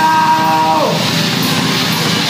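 Live metal band playing: distorted electric guitars, bass and drums, with a held high note that slides down and breaks off a little under a second in.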